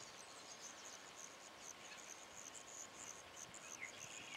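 Faint insect chirping: a high-pitched pulsing that repeats several times a second, going on steadily.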